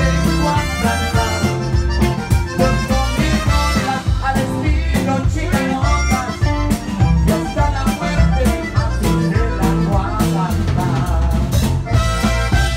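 Live Tejano band playing, with drum kit and bass keeping a steady beat under keyboard and accordion.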